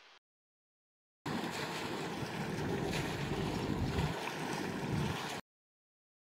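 Water churning in the propeller wash at the stern of a wooden ship under electric propulsion: a steady rush that starts about a second in and cuts off suddenly near the end.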